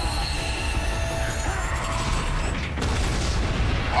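Television drama soundtrack: tense background music over a steady low rumble and mechanical sound effects, with a held tone in the middle.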